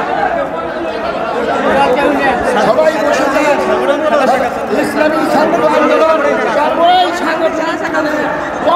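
Crowd of men talking over one another, a steady overlapping chatter of many voices in a large hall.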